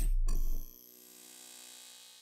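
Logo intro sound effect: a deep, bass-heavy hit dies away about half a second in. A faint ringing tone is left, fading out near the end.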